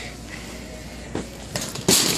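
Steady store background, then a quick cluster of knocks and rustles near the end, the sound of items and the phone being handled over a wire shopping cart.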